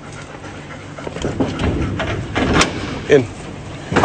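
Several golden retrievers panting and jostling at a door, with scuffling and a few sharp clicks of claws scratching against it.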